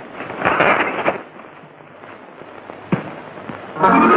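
A few sharp crackling bursts, clustered in the first second with one more near the end, then a loud held music chord starting just before the end, from an old film soundtrack.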